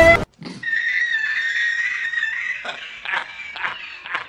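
A man laughing hard: a high, strained wheeze held for about two seconds, then a run of short bursts of laughter. Film-score music cuts off right at the start.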